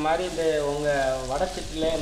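Chopped vegetables sizzling and being stirred with a metal spatula in an aluminium wok, under a voice singing in long, wavering held notes that is the loudest sound.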